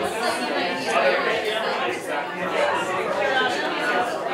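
Indistinct chatter: several people talking at once in a room, with no single voice clear enough to make out words.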